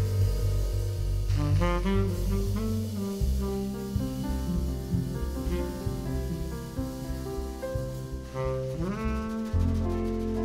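Live jazz: a tenor saxophone plays the melody over walking double bass and drum kit, sliding up into notes about one and a half seconds in and again near the end.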